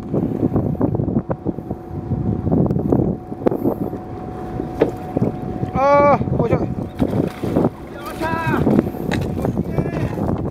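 Hooked seabass splashing and thrashing at the water's surface beside the boat as it is brought into a landing net, over steady wind and water noise with a faint steady hum underneath. Two short high-pitched calls come about six and eight and a half seconds in.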